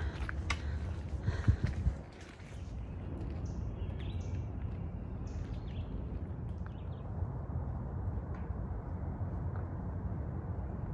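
Footsteps and camera-handling knocks on a rocky trail for the first two seconds. Then a steady low outdoor rumble, with a few short bird chirps about four seconds in.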